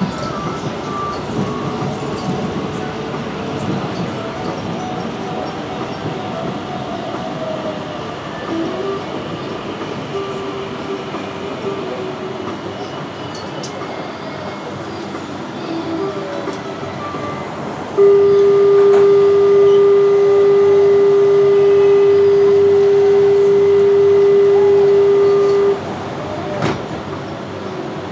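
A Mexico City Metro Line 12 FE-10 train runs and slows to a stop. Then, about two-thirds of the way in, a loud, steady buzzer tone sounds for about eight seconds and cuts off near the end. This is the door-closing warning while the train stands at the platform.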